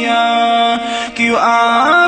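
A man's voice chanting a long, wordless note in a naat recitation, held steady and then sliding upward in pitch in the second half.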